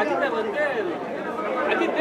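Speech only: voices talking, with overlapping chatter.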